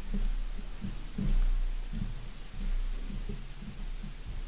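Footsteps on a wooden pulpit floor and steps, heard through the pulpit microphone as irregular dull low thuds, over a steady low hum.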